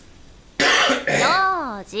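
A short cough-like burst about half a second in, followed by a high-pitched voice speaking Japanese.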